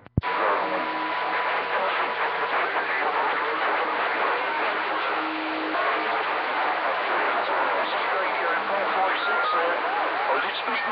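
CB radio receiver on channel 40 lower sideband: a steady wash of band static with faint, garbled, overlapping sideband voices and a few brief whistle tones. The calling station is too weak to pull in through the noise and crowded channel. It opens with a click as the transmitter unkeys.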